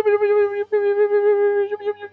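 A man humming a steady, level electronic-style tone, broken briefly about a third of the way in and again near the end, imitating the sound of a computer processing.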